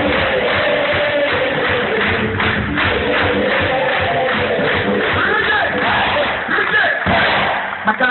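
Loud live band music with drums and singing voices, dense and steady, as heard from among the crowd in a large concert hall and recorded through a phone, which leaves it dull with no treble.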